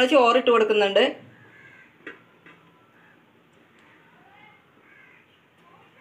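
A crow cawing, loud and harsh, for about the first second. After that come faint soft ticks and rustles as cooked rice is spread over fish masala in a steel pot.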